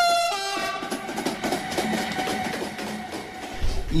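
A train passing on the railway line. A horn sounds right at the start, dropping in pitch after a fraction of a second, and then the train noise fades away.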